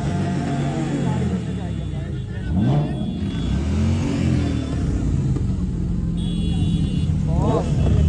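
Porsche Boxster's engine running at low speed as the car creeps forward, with a couple of brief rises and falls in revs, amid crowd chatter.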